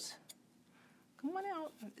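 A near-silent pause, then about a second in a brief stretch of a person's voice.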